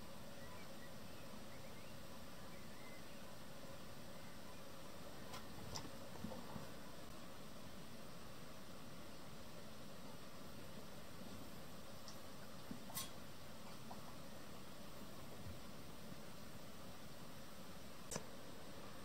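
Quiet, steady outdoor background hiss, with a few faint clicks about five to six seconds in and again near thirteen seconds.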